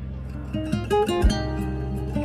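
Instrumental passage of a slow Persian pop ballad: a soft acoustic guitar picks a short run of notes over sustained low backing, with a deep thump a little past the middle.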